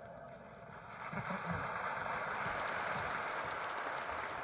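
Large audience applauding in a hall, building up about a second in and then holding steady.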